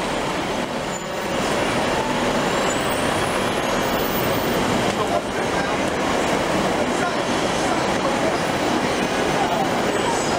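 Steady city street traffic din: engines and tyres of taxis, cars and buses passing close by, with faint voices in the mix.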